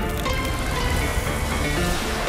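Television news theme music with a steady, dense low end, playing under the program's opening graphics.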